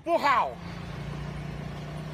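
A car engine idling with a steady low hum, heard from inside the car's cabin, after a man's shouted word in the first half-second.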